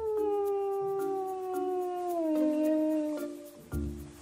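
One long animal howl that swoops up at its start and then slowly falls in pitch, stopping about three seconds in, over background music of short repeated plucked notes.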